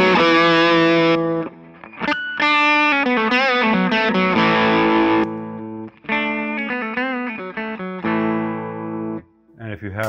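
Electric guitar played through a Psionic Audio Telos buffer/boost/overdrive pedal into a Fender Deluxe Reverb amp, chords and riffs with the pedal's drive and boost both on for a distorted, boosted tone. About six seconds in, the pedal is switched off and the playing goes on cleaner for a few seconds before it stops.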